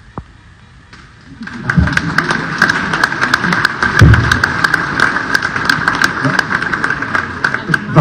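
A room full of people applauding, starting about a second and a half in and keeping up, with voices mixed into the clapping. A low thump comes about four seconds in.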